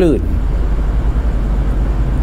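A steady low rumble with a faint hiss, following the last syllable of a man's speech.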